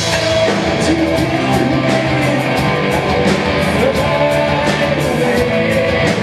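A live rock band playing: electric guitars and drum kit with a steady cymbal beat, and singing.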